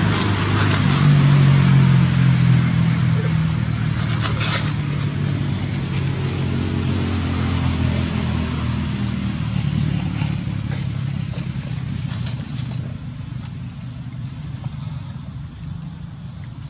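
A motor vehicle engine running with a steady low hum that slowly fades away over the second half, with a brief rustle about four seconds in.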